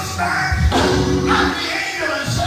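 Gospel music: a choir singing sustained chords over a band with a strong bass line.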